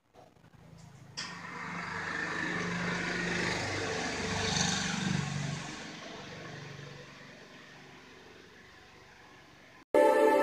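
A motor vehicle passing by. Its engine and road noise start about a second in, grow louder over a few seconds, then fade slowly away.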